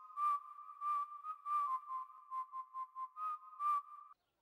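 Whistling: a high tune that steps back and forth between two close notes, each note set off by a breathy puff.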